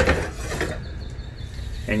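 Steel tape measure blade being pulled out of its case, a steady mechanical rubbing for about a second and a half.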